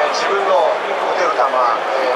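A man speaking, his voice carrying through a large stadium.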